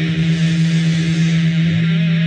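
Heavy rock music: a loud, droning low note held steady, with guitar sustaining over it.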